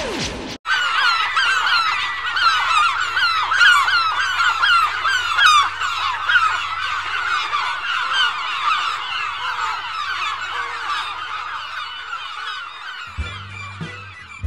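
A short falling whoosh, then a dense, continuous chorus of many birds calling at once, overlapping squawks that run until about a second before the end.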